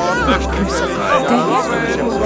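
Christmas market ambience: several voices chattering over one another with music playing underneath.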